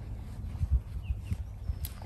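Handling noise from the nylon inner door of an ultralight tent being pulled back and fastened with its toggle: soft rustling and a few low, dull knocks over a low rumble.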